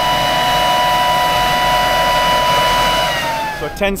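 Air seeder cart's fan running with a steady, loud, high whine over the low rumble of the tractor pulling it. The whine drops in pitch about three seconds in.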